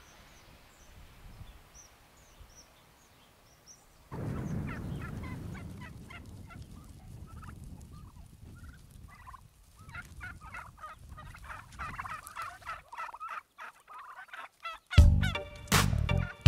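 A flock of white domestic turkeys calling over and over, over a low outdoor rumble. Loud rhythmic music with a beat comes in near the end.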